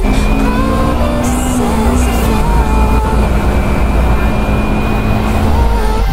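Kawasaki Ninja 250R parallel-twin engine running at a steady cruising speed, with wind and road rumble, and music mixed in behind it.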